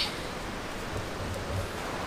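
Steady, even rushing background noise with no distinct sounds standing out.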